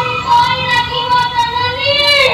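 A high voice singing a slow, drawn-out melodic line through a microphone, holding long wavering notes, as in a Bhaona performer's sung verse.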